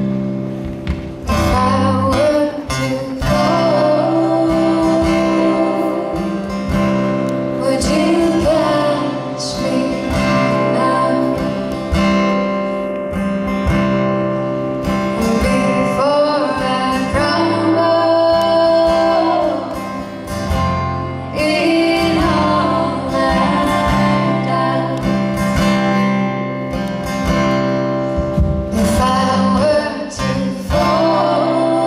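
Live folk-country band music: strummed acoustic guitars with female voices singing the melody, the voices coming in about a second in.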